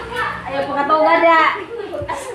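People talking, with a high-pitched voice loudest about halfway through; no words can be made out.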